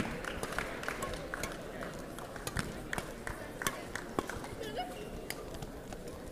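Badminton rackets striking the shuttlecock in a rally: sharp, irregular smacks, the loudest at the very start, with quick footsteps on the court, over a murmur of voices in a large sports hall.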